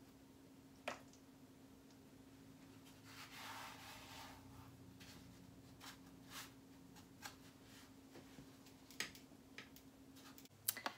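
Near silence: quiet handling of food and plastic kitchenware, with a few soft clicks and a brief soft rustle about three seconds in, over a steady faint hum.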